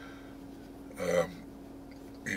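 A man makes one short vocal sound about a second in, over a faint steady hum.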